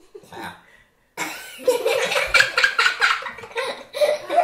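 People laughing: a short laugh at the start, a pause of about a second, then loud, sustained laughter.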